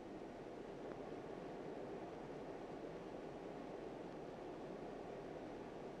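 Faint, steady background hiss with no distinct sounds in it.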